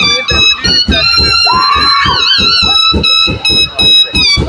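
Dhamal music: drums beating a fast, steady rhythm under a high, shrill wind instrument that holds long notes and breaks into wavering trills.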